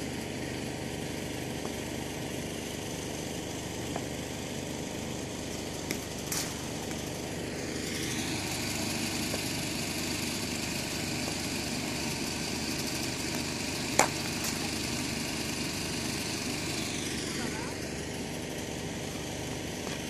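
Cricket bat striking a ball in practice nets: a few sharp knocks, the loudest about fourteen seconds in, over a steady background hum.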